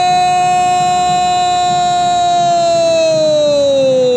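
A Portuguese-language TV football commentator's long, sustained goal cry, "Goool", held as one loud note that slowly falls in pitch over the last couple of seconds.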